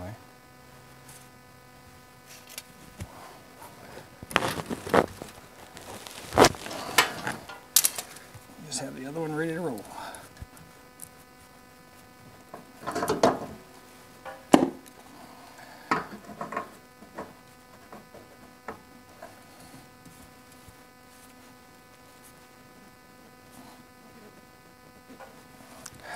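Irregular knocks, clicks and clatter as a spin-on hydraulic filter is worked off the log splitter by hand and held over a plastic drain pan as fluid spills. The clatter is heaviest a few seconds in and again a little past halfway, with a brief muttered voice just before the middle.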